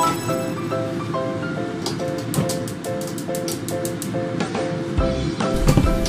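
Background music: a steady pattern of repeated notes, about three a second, with a rising run of notes at the start and light percussive taps from about two seconds in.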